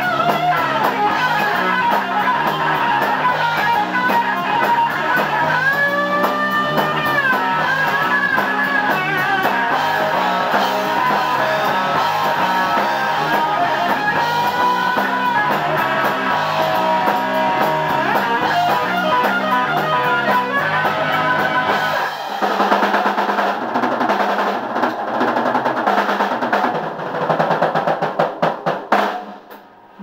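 Live rock band playing an instrumental passage: electric guitar through Marshall amplifiers, electric bass and drum kit. From about 22 seconds in the low end thins and the drums play rapid fills, and the playing briefly drops away just before the end.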